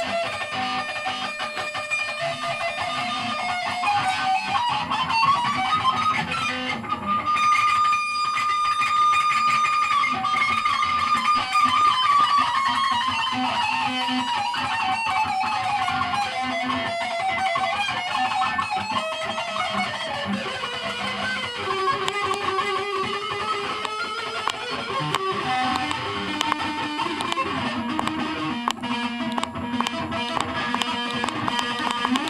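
Electric guitar playing a fast lead line: quick runs of notes that climb and fall, with a long held note about eight seconds in.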